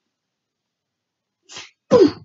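A person sneezing: a short sharp intake about a second and a half in, then the loud explosive sneeze right at the end.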